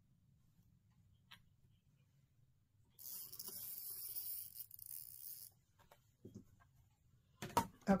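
Fabric marking pen drawn along a clear quilting ruler over cotton fabric: a scratchy hiss lasting about two and a half seconds, a few seconds in. A few sharp knocks near the end as the ruler is handled.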